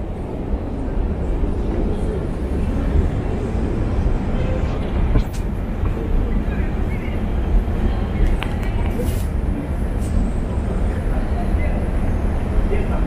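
Steady low rumble of a long Moscow metro escalator running, with the murmur of passengers' voices and a few faint clicks.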